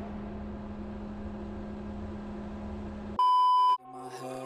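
A faint, steady low hum, then about three seconds in a single loud electronic beep, about half a second long, that stops abruptly.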